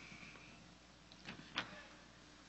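Quiet room tone with two faint, short sounds about a second and a half in.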